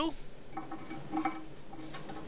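A few light metallic clicks and scrapes as the old toilet flush handle and its mounting nut are worked loose by hand against the porcelain tank.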